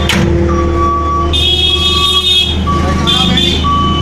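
JCB 170 skid steer loader's diesel engine running steadily, with a single-pitch beeping alarm repeating about once a second, typical of the machine's reverse warning beeper.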